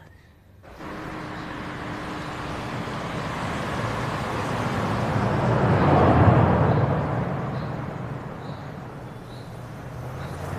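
A car driving past, its engine and tyre noise swelling to a peak about six seconds in and then fading away.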